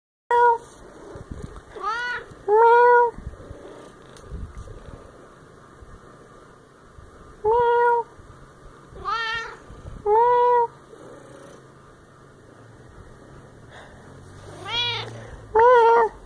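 A domestic cat and a person trading meows back and forth, about eight calls in all: quieter meows that arch up and down in pitch alternate with louder meows held level on one pitch.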